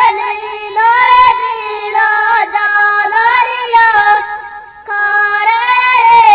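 A high-pitched voice singing a gliding folk melody without drum accompaniment, with a short dip about five seconds in.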